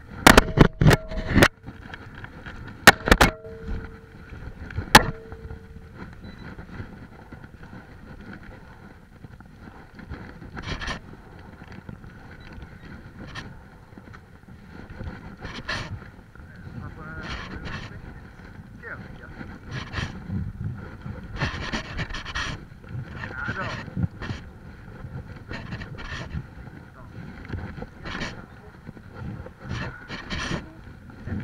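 Sharp clicks and knocks from handling a multiplier fishing reel loaded with braided line, several in the first five seconds. After that, a jacket sleeve rubs over the microphone with scattered light ticks.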